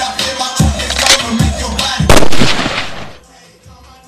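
Hip hop music with a heavy kick-drum beat, then about two seconds in a single loud gunshot bang, after which the music cuts out.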